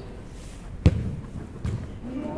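A futsal ball kicked hard: one sharp thump a little under a second in, followed by a softer thud near the end.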